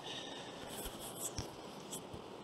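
Faint room tone of a microphone left open after speaking, with a few soft clicks about a second in and near the end.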